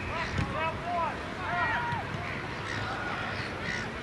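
Distant shouts and calls from players and spectators across a football ground during play: many short, overlapping calls.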